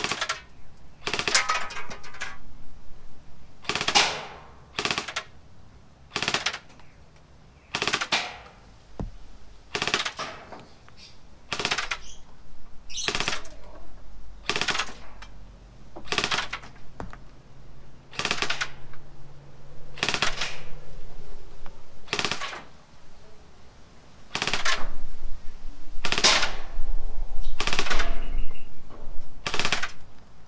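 Wells CQB gel blaster, the nylon-bodied electric model with a V2 gearbox, firing single shots: about two dozen sharp shots, spaced roughly one to two seconds apart.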